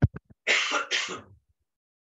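A person clearing their throat into a microphone: a few quick clicks, then two short rasps starting about half a second in.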